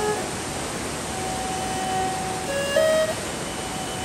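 Steady rushing roar of the Bagmati river in flood, fast brown water churning over rocks in a narrow gorge. A few long held notes of background music step from pitch to pitch over it.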